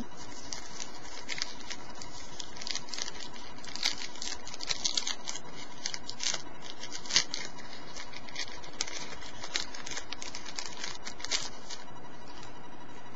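Wrapper of a Panini football trading-card pack being torn open and handled, an irregular run of crinkling and crackling rustles with scattered sharper snaps.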